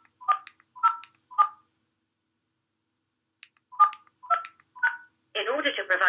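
Phone keypad touch tones (DTMF) as digits are keyed into an automated phone menu: three short beeps about half a second apart, a pause of about two seconds, then three more. This is a date of birth being entered. A recorded automated voice starts up near the end.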